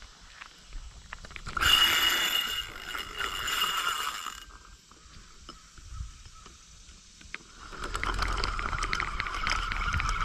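Spinning reel being cranked, its gears whirring in two spells: about three seconds from just after the start, then again from about eight seconds in.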